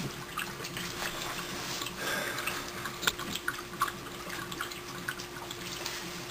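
HHO torch burner flames hissing steadily under a steel frying pan of heating corn oil, with scattered small crackles and pops throughout and a faint steady hum underneath.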